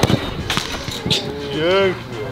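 A ball being kicked hard: a sharp thud right at the start, then a second sharp knock about half a second later. Near the end a voice calls out.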